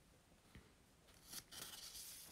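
Near silence with a tiny click about half a second in, then soft rustling handling noise close to the microphone in the second half.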